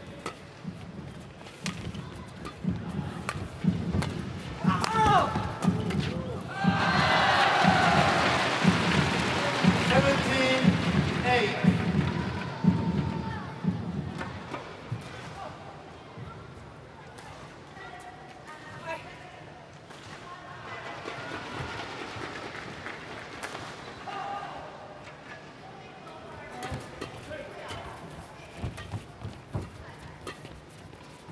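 A badminton rally: sharp racket-on-shuttlecock hits and shoe squeaks on the court, then an arena crowd cheering and shouting for several seconds as the home Chinese pair wins the point. The crowd settles to a murmur, and sharp racket hits return near the end as the next rally starts.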